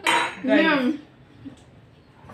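A metal spoon clinking and scraping on a ceramic plate, with a short vocal exclamation about half a second in; the second half is quieter.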